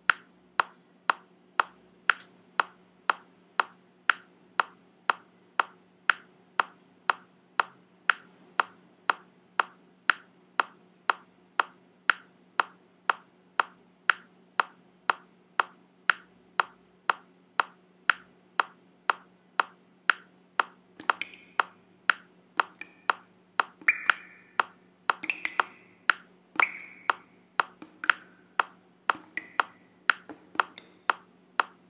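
Metronome ticking steadily at about two clicks a second over a steady low hum. From about two-thirds of the way in, short higher-pitched sounds come in between the ticks.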